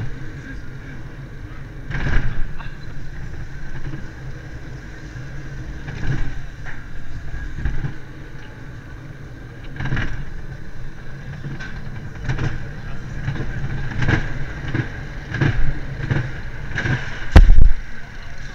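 Maurer Wild Mouse coaster car rolling along its steel track: a steady rumble with a high whine from the wheels, broken every second or two by short knocks as it passes over track joints and curves, and a heavy thump near the end.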